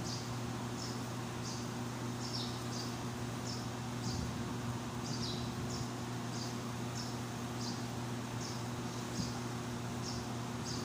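Short high chirps, repeating about twice a second, over a steady low hum.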